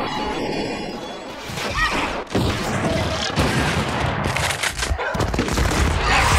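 Several rifles firing a ragged volley of overlapping shots, starting about a second in, with heavy booms among them.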